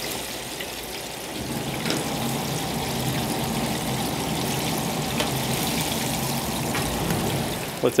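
Beer-battered speckled trout frying in a commercial deep fryer: the hot oil sizzles and bubbles steadily, getting a little louder about a second and a half in, over a steady low hum.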